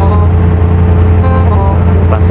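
Loud, steady low drone of a ship's engines and machinery, heard on the open deck.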